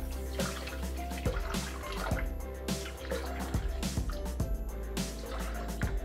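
Background music with a steady beat, over the trickle of orange juice being poured from a jug into a Thermomix's steel mixing bowl.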